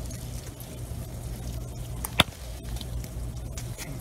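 A grape-bunch stem being cut, one sharp click about halfway through, over a steady low hum.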